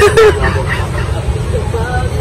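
Voices talking, loudest just at the start and fainter after, over a steady low rumble.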